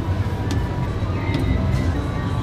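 Fairground background noise: a steady low rumble with faint music, broken by a few short sharp clicks.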